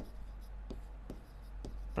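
A pen writing on a board: faint scratches and light ticks as the letters are stroked out.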